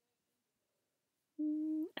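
Near silence, then near the end a woman's voice gives a short, steady hum, a held "mmm" about half a second long that lifts slightly in pitch just before she starts talking.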